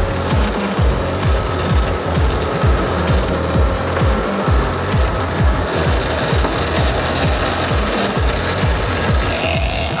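Background music with a fast, heavy low beat over a steady rasping whirr of line being pulled off a big-game trolling reel as a hooked marlin runs.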